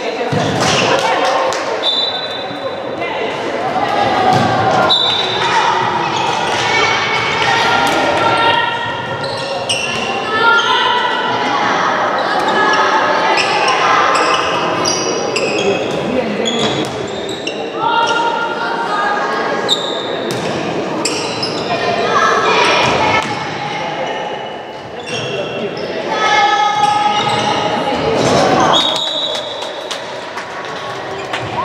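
Handball bouncing and striking the wooden sports-hall floor again and again during play, echoing in the large hall, with players and spectators calling out.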